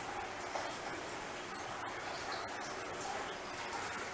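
Low, steady background hiss with a few faint clicks.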